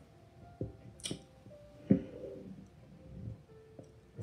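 Quiet background music of a few soft held notes that shift in pitch, with a few small clicks in the first half.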